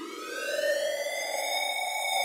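Synthesized transition sound effect: an electronic tone with many overtones that rises in pitch and then levels off into a steady, siren-like hold.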